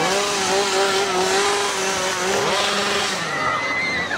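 Chainsaw engine running steadily at speed, its pitch dipping briefly about two and a half seconds in before it dies away shortly before the end.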